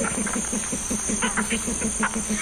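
A field recording of invertebrate sounds played back over the hall's speakers: a rapid, even train of low pulses with faint clicks and a steady high hiss.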